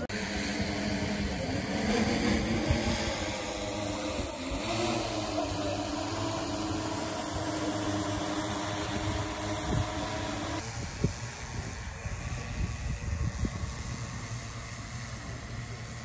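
Large multirotor drone's propellers humming steadily in flight, a stack of even tones. It grows louder about two seconds in, then becomes duller and fainter about ten seconds in.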